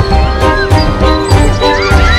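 Background music with a steady beat and sustained notes. A brief high gliding cry sounds over it near the end.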